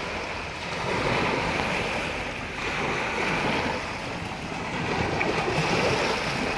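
Sea waves washing in over shore rocks, swelling twice, with wind buffeting the microphone.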